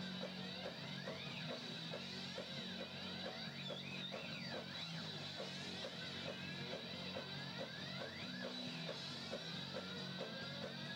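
Live rock band playing through a PA: electric guitar with many sliding notes over a steady, repeating bass line, heard from out in the crowd.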